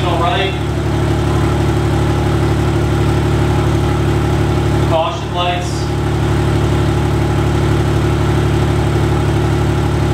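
BMW M2's inline-six engine idling steadily, heard from behind the car at the exhaust, with a brief voice-like sound about a third of a second in and again around five seconds in.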